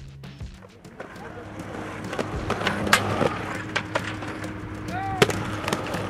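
Skateboard wheels rolling on asphalt, with several sharp clacks and knocks from the board, over background music that grows louder.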